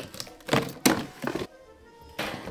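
Cardboard box of black metal wire shelving being opened and handled: a few knocks and cardboard scrapes in the first second and a half, the loudest just before a second in, over background music.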